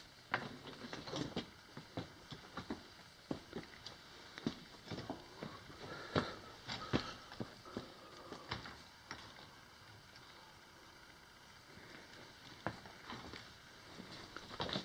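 Footsteps over loose broken rock: faint, irregular crunches and clinks of shifting stones underfoot, dying away for a couple of seconds near the two-thirds mark before a few more steps near the end.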